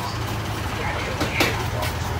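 A steady low motor hum runs under faint background voices, with two light clicks late on.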